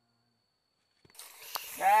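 Silence for about a second, then a steady hiss comes in with a single click, and a man starts talking near the end.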